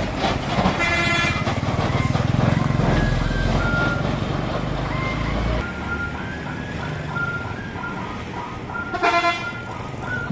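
A heavily loaded oil-palm truck passes close by, its diesel engine and tyres rumbling low for about the first five seconds. Short vehicle horn toots then sound on and off.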